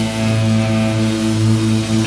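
1990s indie rock music: a steady held chord, its notes sustained without strumming or breaks.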